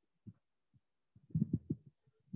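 A few soft, low thumps, most of them in a quick run just over a second in, with quiet between.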